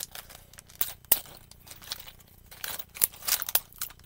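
A small plastic earring packet being handled and pried open by hand: irregular crinkling with sharp clicks and taps, the loudest about a second in.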